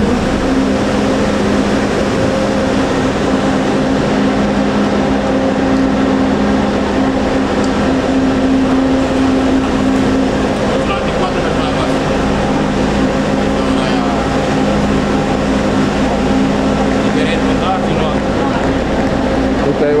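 Steady low hum of idling coaches standing at the kerb, with faint voices of people nearby.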